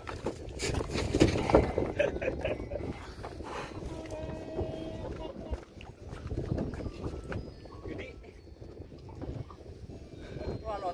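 Indistinct voices with a cluster of knocks and clatter in the first two seconds, then quieter low rumbling and handling noise.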